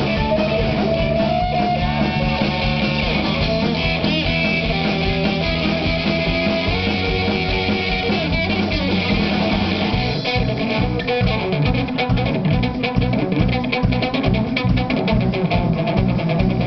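A live band playing an instrumental passage, with guitar to the fore over bass. About ten seconds in the playing turns busier, with rapid, closely spaced hits.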